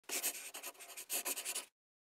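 Brief intro sound effect of rapid, scratchy strokes in two quick runs with a short gap between them, ending abruptly just before two seconds.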